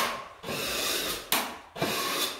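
Steel joint knife scraping cornice cement along the joint between cornice and wall. There are three strokes, each starting sharply; the middle one is drawn out longer and steadier.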